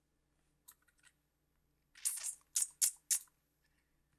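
Computer mouse clicking: a few faint clicks about a second in, then a quick cluster of sharper clicks around two to three seconds in.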